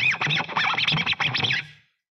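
Fret-hand fingers sliding up and down guitar strings, giving a quick run of squeaks that rise and fall in pitch and stop shortly before the end. This is the string noise that muting between power chords is meant to silence.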